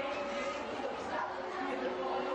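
Several people talking over one another at once: a group of students chattering in a room, no single voice standing out.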